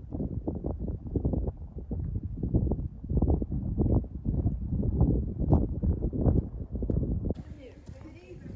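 Gusty wind buffeting the microphone, an uneven low rumble that rises and falls. Near the end it gives way to quieter open air with faint voices of people.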